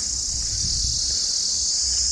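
Steady, high-pitched chorus of insects buzzing without a break, with a faint low rumble underneath.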